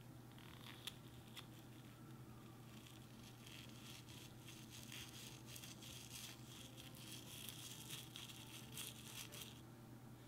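Small scissors snipping into a mini water balloon, a few sharp clicks about a second in. Then glitter pours and patters out of the cut balloon into a small bowl as a faint rustling with many tiny ticks, stopping just before the end.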